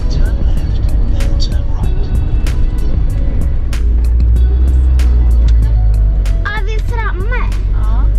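Van driving on the road, heard from inside the cabin: a steady low road and engine rumble, with music playing over it and a voice starting about six and a half seconds in.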